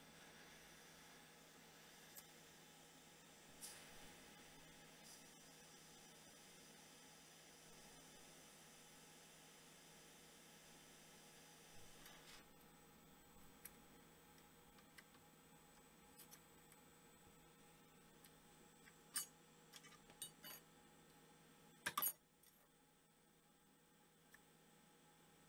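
Near silence: a very faint steady hiss through the first half that drops away about halfway, and a few small clicks near the end.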